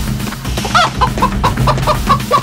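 A chicken clucking: a short squawk under a second in, then quick repeated clucks, about five a second, over background music.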